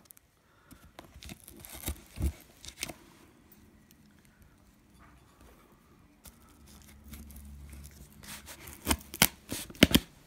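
Nail clippers snipping and tearing through packing tape along a cardboard box's seam, in scattered sharp clicks and crackles, loudest in a cluster near the end.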